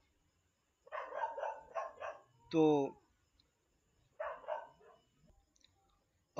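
A small dog yapping in two quick runs of high-pitched yaps, about a second in and again past four seconds. A man's single spoken word falls between them and is louder than the yaps.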